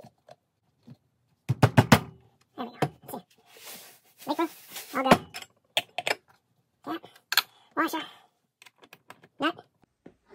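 A high-pitched, chattering voice in short snatches, like speech played back fast, mixed with sharp clicks and knocks of handling.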